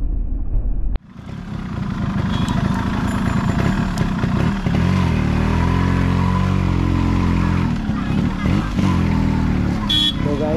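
Yamaha RX100's two-stroke single-cylinder engine running as the motorcycle is ridden, its revs rising and falling. The sound cuts out sharply about a second in, then builds back up.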